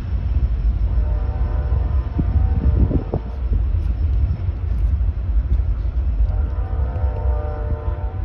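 Freight train moving away along the track with a steady low rumble, while a train horn sounds two long chords: one about a second in lasting about two seconds, and another near the end.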